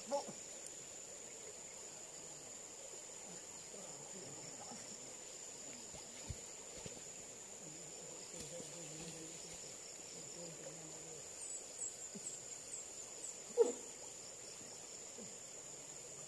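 Faint, distant men's voices carrying across the water, over a steady high-pitched whine, with one short louder call about three-quarters of the way through.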